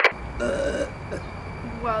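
A person burping once, a short pitched belch about half a second in, which is then called "so nasty". It follows the cut-off tail of a loud outro sound effect at the very start.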